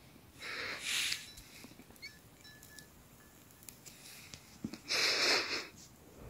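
A person exhaling hard twice, each breath about a second long, one near the start and one near the end, blowing out smoke close to the microphone.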